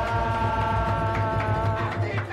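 Live samba-pagode band playing: one long note is held over a steady pulsing bass and percussion.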